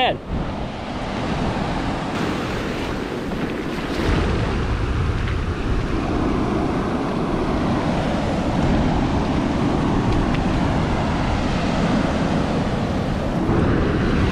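Ocean surf washing in over the shallows at the water's edge, a steady rushing wash, with wind buffeting the microphone that grows heavier about four seconds in.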